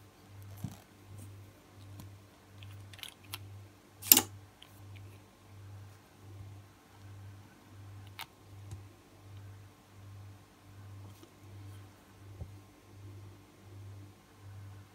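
Small clicks from handling a nail polish bottle and its brush cap, with one sharp click about four seconds in, over a faint low hum that pulses about twice a second.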